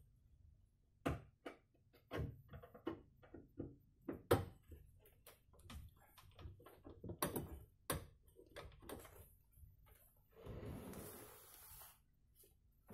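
Irregular clicks and knocks of hand work on a wardrobe with a hanging sliding-door track. A scuffing noise lasting about a second comes near the end.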